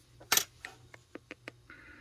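A sharp click about a third of a second in, then a few lighter ticks and a short soft rustle near the end: a steel ruler being set down and shifted over paper templates on a plywood tabletop.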